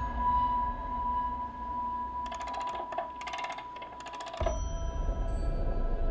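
Film trailer sound design played back through speakers: a steady electric hum tone, broken by three short bursts of buzzing about two, three and four seconds in, then a low rumbling drone with higher held tones begins about four and a half seconds in.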